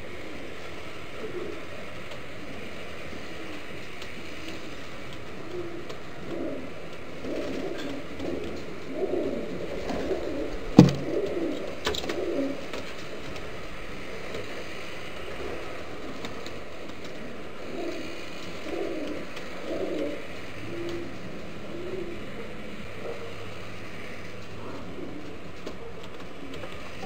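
Homing pigeons cooing over and over, the calls thickest through the middle stretch. A single sharp click cuts in about eleven seconds in.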